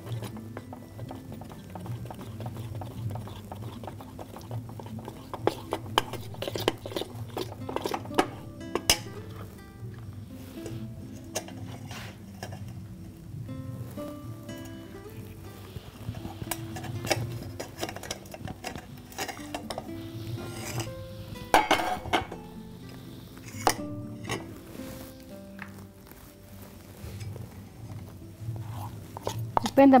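A utensil stirring melted chocolate in a stainless steel bowl, clinking and scraping against the metal at irregular moments, with a few louder knocks, over background music.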